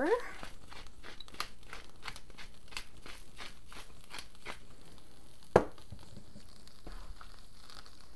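Pepper mill being twisted by hand, grinding peppercorns in a run of dry, crackly clicks for about five seconds. A single sharp knock follows about five and a half seconds in.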